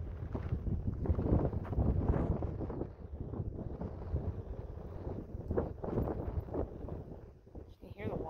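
Wind buffeting the microphone: a gusting, low rumble that eases off near the end.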